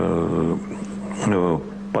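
An elderly man speaking Russian haltingly, with a long held hum or drawn-out vowel between words.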